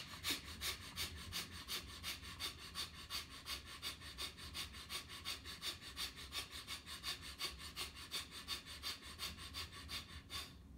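A man's rapid, forceful breaths in a yogic breathing exercise: short sharp puffs of air, evenly paced at about four to five a second.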